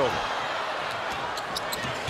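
Basketball being dribbled on a hardwood court, a few sharp bounces over a steady arena crowd murmur.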